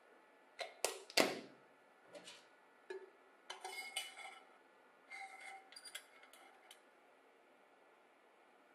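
A tin can being handled as a cut plastic bottle bottom is pressed onto it and a thin wire is run through it: two sharp metallic knocks about a second in, then lighter scattered clinks and scrapes that die away near the end.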